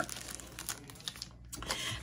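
Clear plastic packaging crinkling softly as it is handled, with a few light ticks.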